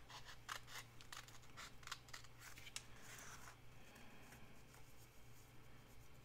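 Small scissors snipping through a thin old book page: a faint run of quick little clicks, thinning out about halfway through.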